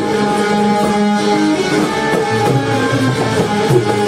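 Instrumental passage of Indian folk music: a keyed Indian banjo (bulbul tarang) playing a quick run of plucked notes over held harmonium chords, with tabla and dholki in the ensemble.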